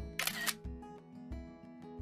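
A camera shutter click about a quarter second in, as a photo is taken, over background music with a steady beat.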